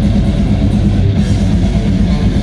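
Death metal band playing live: fast, dense drumming under distorted electric guitar and bass, loud and steady throughout.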